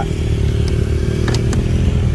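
Motorcycle engine idling steadily at an even pitch, with a couple of light clicks about a second and a half in.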